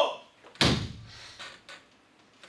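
An open hand slapping flat against a chalkboard once, a sudden loud thump about half a second in that dies away quickly.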